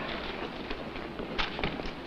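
Quiet steady background hiss with a few short, light clicks, clustered about one and a half seconds in.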